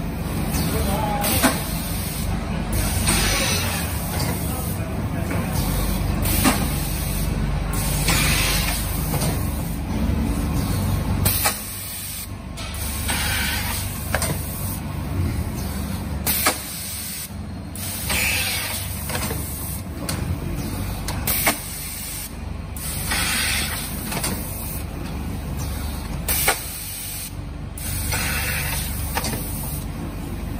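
Vertical form-fill-seal powder packing machine running through its bagging cycle: steady machine noise with hissing pneumatic air bursts and a sharp knock recurring about every five seconds.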